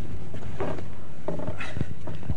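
Steady low hum and background noise, with faint muffled voices about half a second in and again past the middle.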